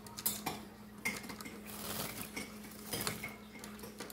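Green-cheeked conure moving about in a stainless steel sink during its bath: irregular clicks and scrabbling of its claws and beak on the steel and a plastic water tub, with a few louder taps.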